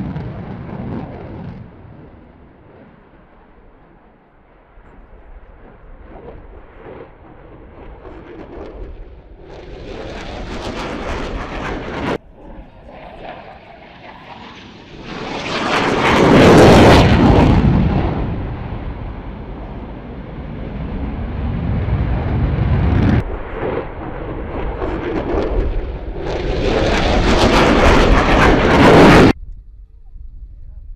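Single-engine F-16 fighter jet flying past, its engine noise swelling to a loud peak about halfway through and then fading. The noise builds and breaks off abruptly several times, as passes are cut together.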